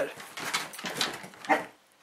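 Two Podenco dogs scrambling up to the window sill, with a short whine about a second and a half in.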